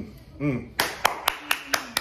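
Two short closed-mouth hums, then from just under a second in a quick run of hand claps, about four a second.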